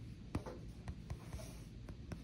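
Writing and tapping on a touchscreen laptop's glass: a few light taps, with a short scratchy stroke about a second and a half in.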